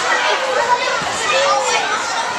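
Steady din of many children playing at once, a jumble of high voices calling out and shouting over each other.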